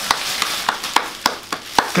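Thin plastic rain poncho crinkling and crackling as its hood is pulled back off the head: a dense run of sharp crackles with no break.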